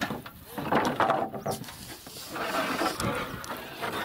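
A wooden board being worked into place in a timber frame: irregular scraping and knocking of wood against wood and packed earth, in two rough stretches.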